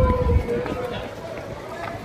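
Indistinct chatter from people nearby, with a few heavy low thumps in the first half second.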